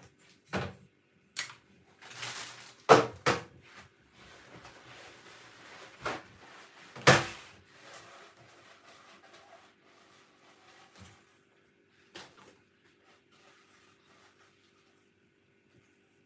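A series of separate knocks and clatters, like cupboard doors, drawers or kitchen items being handled, with a faint rustling noise between them; the two loudest knocks come about three and seven seconds in, and the sounds die away near the end.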